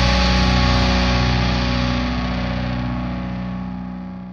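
A final distorted electric guitar chord of a metal track left to ring, sustaining steadily and slowly fading out.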